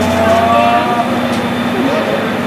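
C58 steam locomotive creeping slowly along a station platform, with a steady hum and the hiss of escaping steam. Onlookers' voices are mixed in.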